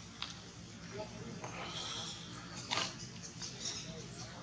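Long-tailed macaques making scattered short calls and squeaks, with a sharp click a little before the end.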